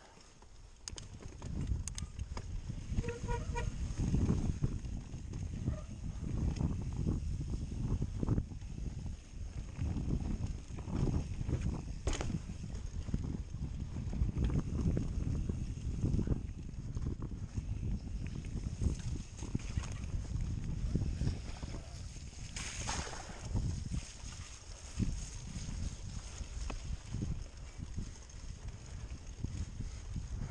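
Mountain bike ridden along a rough dirt singletrack: an irregular low rumble and rattle of tyres and bike over the ground, with wind buffeting the camera microphone, building up about a second in. A short honk-like call sounds about three seconds in.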